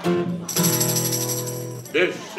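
Acoustic guitar strummed, settling about half a second in into a chord left to ring, with a tambourine's metal jingles shimmering above it.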